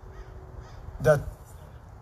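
A faint bird call, like a crow's caw, sounds during a pause in a man's speech. About a second in, he says one short word.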